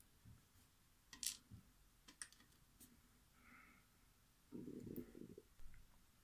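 Near silence, with a few faint, short clicks and a soft low rustle near the end: small handling noises of fingers and tiny brass lock pins held in the palm.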